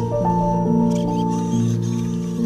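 Background music: sustained chords over a low bass note, the notes changing in steps every half second or so.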